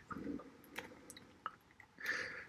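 Quiet room tone with a few faint, soft clicks scattered through the middle.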